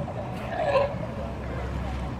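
Sea lions in a hauled-out colony, one giving a short groaning call about half a second in, over a steady low rumble.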